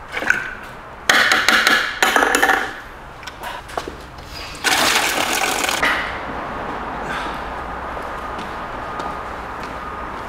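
Water from a hose running into a plastic wash bucket of car shampoo, whipping it into foam. Loud gushes about a second in and again near five seconds, then a steady fill.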